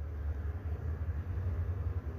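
A low, steady background rumble that also runs beneath the speech on either side.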